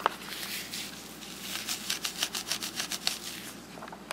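Close handling sounds: a run of soft scratchy clicks and rustles, several a second, busiest in the middle.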